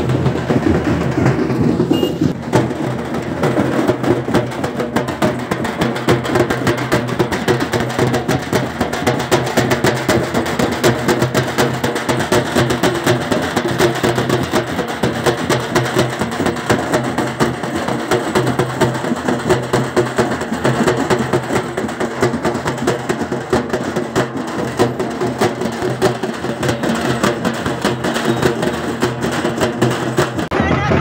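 Loud music driven by fast, dense drumming and percussion.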